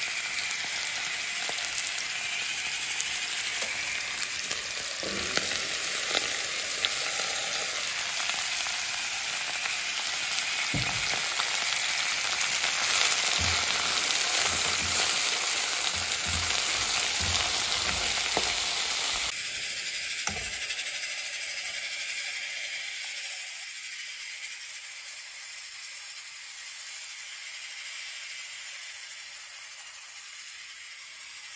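Sliced okra and diced vegetables frying in oil in an aluminium saucepan, a steady sizzle, with the low knocks of stirring against the pan. The sizzle drops off noticeably about two-thirds of the way through.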